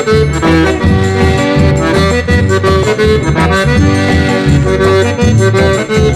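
Piano accordion playing an instrumental break of a recorded song, a held-note melody over steady, rhythmic bass notes.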